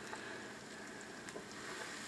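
Sliced onions frying in a skillet on an electric stove: a faint, steady sizzle, with a couple of faint ticks.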